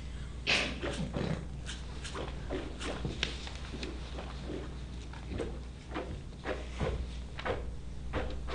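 Toothbrushes scrubbed against teeth by three players, short irregular scratchy strokes of varying pitch as a composed piece, with a louder stroke about half a second in.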